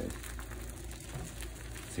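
Beaten eggs sizzling faintly and steadily on the hot plate of an electric contact grill.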